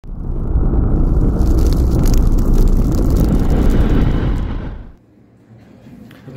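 Intro sound effect: a loud, deep rumble like a blast or a fire, fading out just before five seconds.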